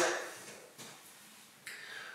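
A pause between sentences of speech: quiet room tone, with a soft breath drawn in near the end before the speaker goes on.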